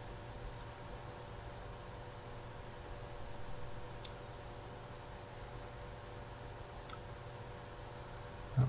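Steady low electrical hum with a few faint steady tones, the background noise of a desktop recording setup, with about three faint mouse clicks as the timeline is edited.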